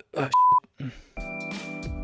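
A brief voice sound, then a single short steady electronic beep about half a second in. Background music with a steady beat comes in just past a second.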